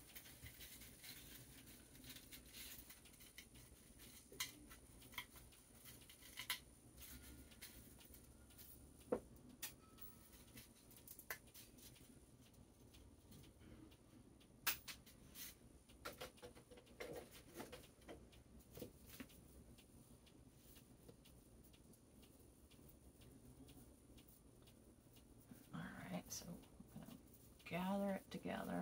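Faint, scattered rustles and light clicks of plastic deco mesh being unrolled off its tube and handled, with near silence between them.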